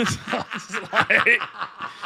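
Two men laughing hard, a quick run of short, breathy laughs.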